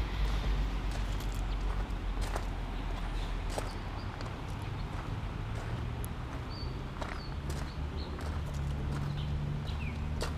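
Footsteps crunching on loose gravel, irregular and uneven, over a steady low rumble.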